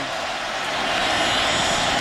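Stadium crowd noise, a steady roar that swells slightly as the play begins.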